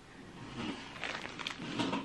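Faint rustling and light crinkling of a plastic-wrapped cross-stitch kit being handled, with soft scattered ticks.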